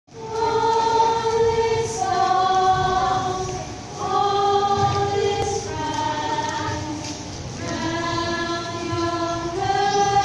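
A small group of women singing together a cappella, holding long notes in slow phrases of a second or two.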